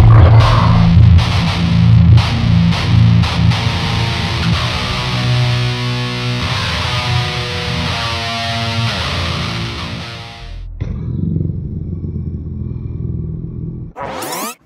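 Electric guitar with heavy distortion playing a slow, low stoner-doom riff: chugging chords at first, then held notes bent and shaken in pitch. The playing stops abruptly about ten and a half seconds in, leaving a quieter low ring.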